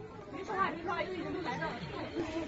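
Low background chatter of trapped subway passengers talking quietly among themselves.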